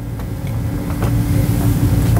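A low rumble that grows louder through the pause, with a steady low hum above it.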